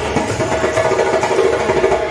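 Hand drum slung on a strap, struck by hand in a quick steady beat over music.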